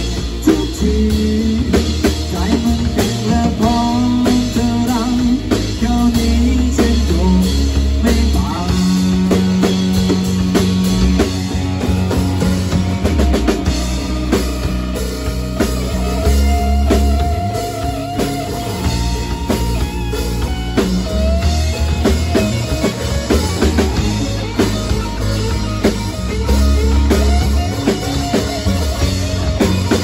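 A rock band plays live on drum kit, electric guitar, bass guitar and acoustic guitar, with singing over part of it.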